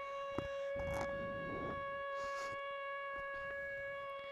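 A steady, buzzy tone held at one pitch throughout, with a few faint knocks under it.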